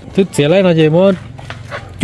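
One drawn-out vocal sound, rising and falling in pitch, lasting about three-quarters of a second, with a short blip just before it.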